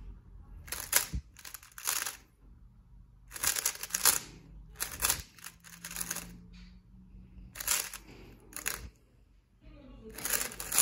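GAN 354 3x3 speedcube being turned fast by hand: short bursts of rapid plastic clicking as the layers snap through quick algorithm turns, about seven bursts with brief pauses between.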